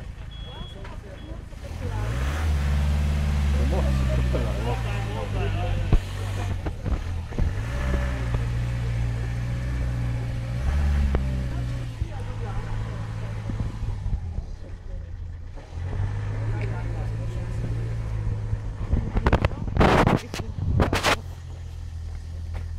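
A van's engine running and revving in swells as it manoeuvres and backs into a driveway, with its reversing beeper sounding in the first second. Voices talk nearby, and a few loud knocks come near the end.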